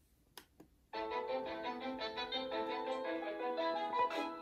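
Instrumental backing track of a musical-theatre song starting about a second in, after a brief hush: the intro before the singing comes in.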